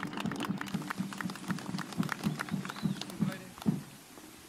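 A group of people applauding, with separate hand claps heard one by one; the applause thins out and dies away near the end.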